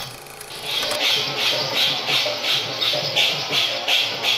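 Kirtan dance music with a fast, steady beat of jingling hand percussion, about three strokes a second. It drops out for a moment at the start and comes back under a second in.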